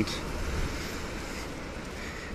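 Wind noise on the microphone over steady outdoor background noise: a continuous low noise with no distinct events.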